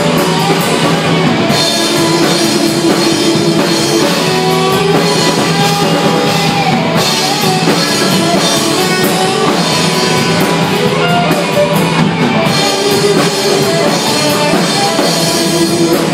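Live rock band playing loud, with electric guitar over a drum kit.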